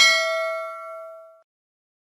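A bell-like notification ding sound effect, struck once and ringing with several pitches, fading out about a second and a half in.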